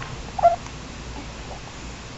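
A one-month-old baby gives one brief, high squeak about half a second in while sucking on a bottle.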